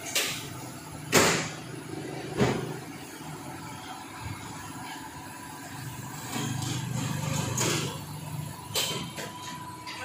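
A few sharp knocks: three within the first three seconds, about a second apart, and another near the end. A low steady hum rises between them for a couple of seconds.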